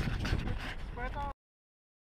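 Wind buffeting the microphone with a brief snatch of a man's voice, then the sound cuts off abruptly to silence about a second and a third in.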